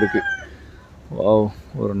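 A rooster crowing, the call trailing off in a falling tone in the first half second, over a man's voice.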